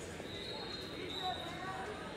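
Indistinct voices of spectators and coaches echoing in a large hall during a wrestling bout, with a dull thud about a second in.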